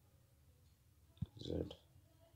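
A single sharp click about a second in, followed by a brief murmur of voice.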